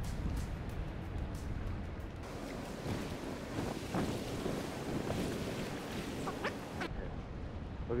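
Wind buffeting the microphone over the rush of a fast, choppy river, with a few indistinct voice sounds. A background music track with a light ticking beat fades out about two seconds in.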